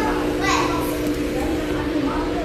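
Indistinct voices, like children talking and playing, over a steady low hum.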